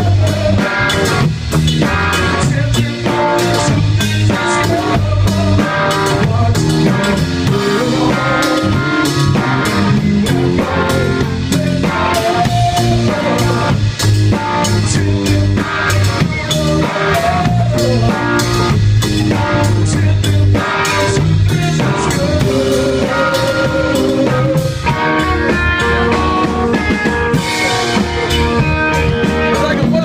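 Live band music: electric guitar played over a drum kit in an instrumental stretch with no singing, the guitar line bending in pitch at times.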